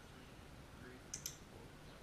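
Two quick, sharp clicks about a tenth of a second apart, a little over a second in, in an otherwise quiet room.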